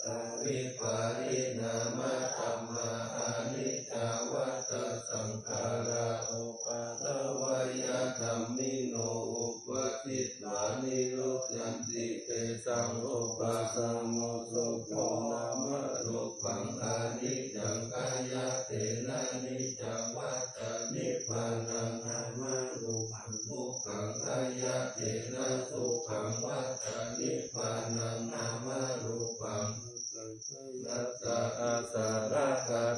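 Thai Buddhist morning chanting (tham wat chao): a group of voices reciting Pali verses together in a steady, unbroken rhythm.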